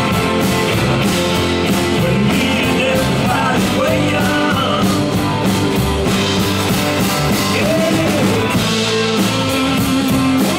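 Blues-rock band playing live: acoustic-electric guitar, two electric guitars, bass guitar and drum kit keeping a steady beat.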